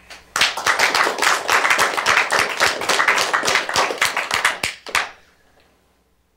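Audience clapping at the close of a lecture. It starts abruptly, runs as a dense patter of claps and dies away about five seconds in.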